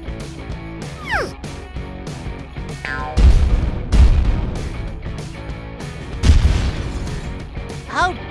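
Background music with added cartoon battle sound effects: a falling zap about a second in, then heavy explosion booms about three, four and six seconds in.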